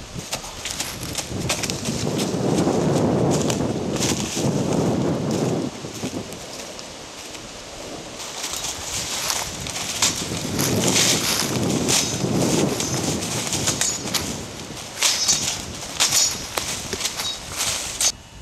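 Footsteps crunching and rustling through dry fallen leaves and brush, in two longer spells of walking. A bird chirps a few short high notes near the end.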